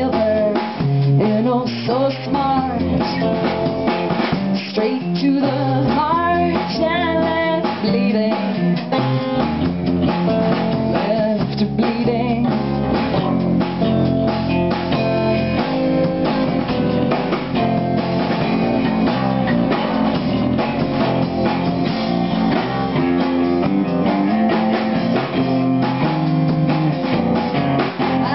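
A rock band playing live: guitar, bass guitar and drum kit together at a steady loud level.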